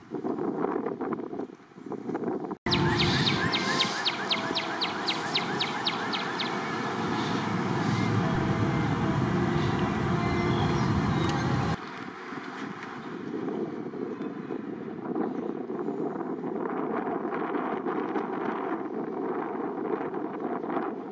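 Outdoor ambience of wind buffeting the microphone and road traffic, changing abruptly twice as the shots change. A few seconds in there is a quick run of evenly spaced high ticks.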